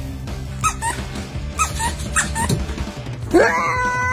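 Background music with a dog yipping about six times in short cries that fall in pitch, then a louder, longer cry that rises and holds near the end.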